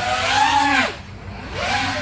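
FPV racing quadcopter's motors and propellers whining as the throttle is worked: the pitch rises and falls over the first second, then climbs again about one and a half seconds in.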